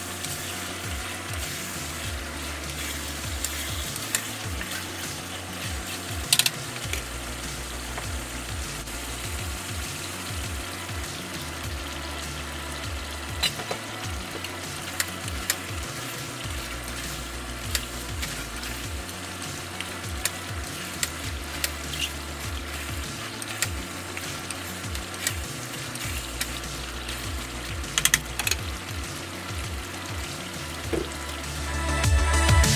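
Chicken pieces sizzling and frying in a wok as a wooden spatula stirs them, with scattered sharp knocks and scrapes of the spatula against the pan.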